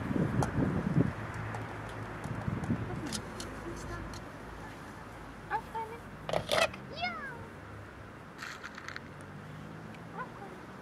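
Plastic sand toys knocking and rattling as a small dog picks them up and drops them into a plastic bucket, with clicks near the end. Between about five and a half and seven seconds in come a few short high-pitched calls, the last sliding down in pitch.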